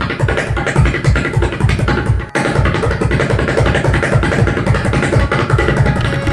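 A tabla pair played fast in a dense, unbroken stream of strokes: rapid tere-kete rolls on the dayan over deep bass strokes from the bayan, the lesson's terekete-toko practice phrases. The playing breaks off very briefly about two seconds in.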